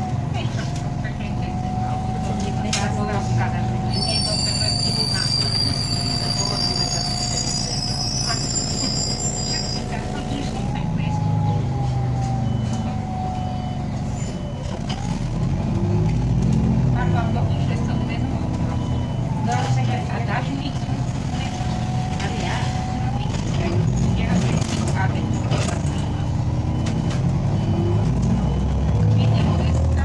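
Interior sound of an Irisbus Citelis 10.5 m CNG city bus on the move: a low engine drone with a thin whine that rises and drops several times as the bus pulls away, shifts and slows, with rattles and clicks from the body.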